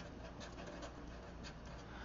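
Faint scratching of a felt-tip marker writing on paper, a run of short, quick strokes.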